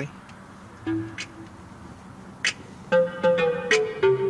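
Music from the car stereo playing through the cabin speakers. It is quiet and sparse at first, then gets louder about three seconds in, as the volume is turned up with the steering-wheel buttons.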